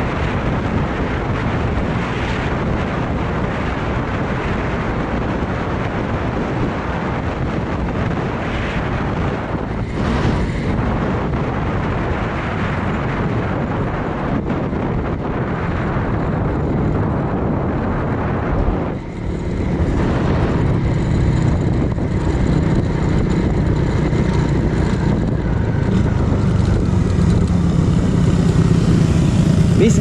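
Suzuki Raider 150 Fi single-cylinder four-stroke engine running at road speed, heard from the rider's seat under a steady rush of wind noise. The sound dips briefly about two-thirds of the way through, then carries on a little louder and steadier.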